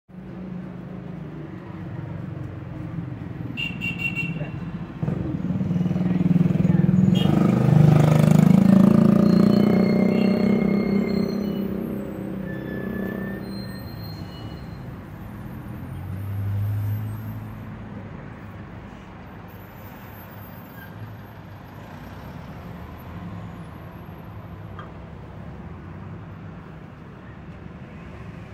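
Street traffic: a motor vehicle's engine passes close by, building up to its loudest about eight to ten seconds in and fading away, then a steady hum of traffic with a smaller swell near the seventeen-second mark.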